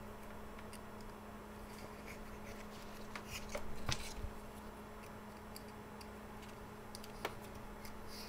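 Faint small clicks and rustles of nylon zip ties being handled and threaded through holes in a plastic battery door, busiest about halfway through.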